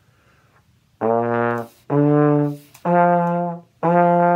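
Plastic trombone playing four separate held notes, B flat, D, F and F, rising in skips and leaving out the C and the E flat. The notes begin about a second in; the last repeats the third note's pitch and starts just before the end.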